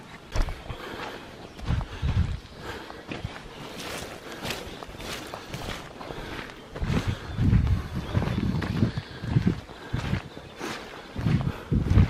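Footsteps of a person walking over rough, wet ground and a muddy dirt track: irregular thuds of boots landing, with scuffs and small clicks.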